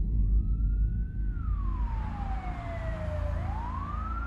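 Police siren wailing in a slow rise and fall, climbing again near the end, over a low steady rumble.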